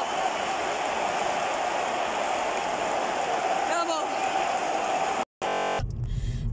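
Stadium crowd noise: a dense din of many voices with a steady held tone running through it, cut off abruptly about five seconds in. Near the end a low, steady rumble of a car's interior begins.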